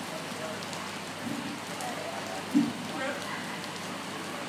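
A steady hiss with faint, indistinct voices over it, one short louder voice sound about two and a half seconds in.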